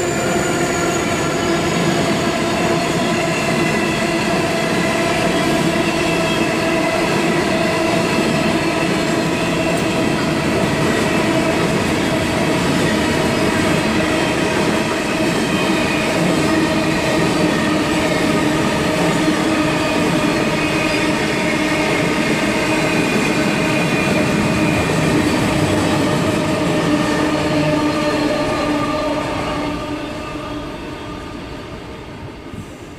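Freight train wagons rolling past close by: a loud, steady rumble of wheels on rail with several held whining tones over it, fading in the last couple of seconds as the end of the train goes by.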